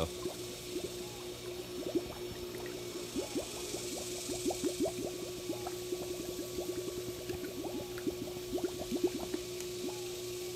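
Pool vacuum hose held under water as it fills, gurgling with many quick small bubbles as the air in it is purged, over a steady hum.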